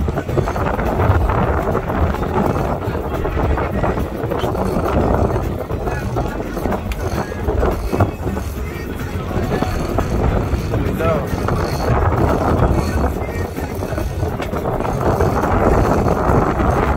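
Wind rushing over the microphone on a boat at sea, over the running engine and the sea, with indistinct voices underneath.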